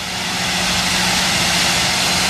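Loud, steady hiss of high-pressure water blasting on a ship's hull, with a constant machine hum underneath.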